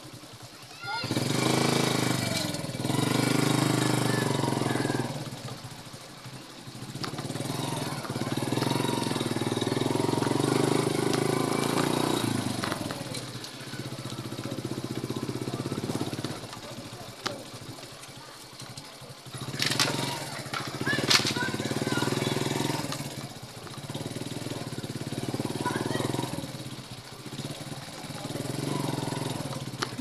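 Motorcycle engine running as the bike rides along, growing louder and easing off every few seconds as the throttle opens and closes. Two sharp knocks come about twenty seconds in.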